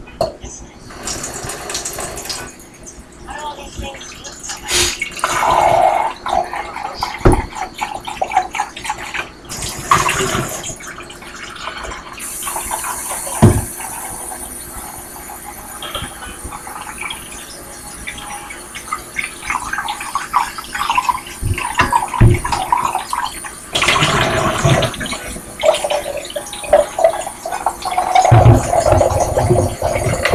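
Kitchen tap running water into a mud jug (a dip spit jug) in a steel sink, a steady hiss from about twelve seconds in, with a few sharp knocks as the jug is handled.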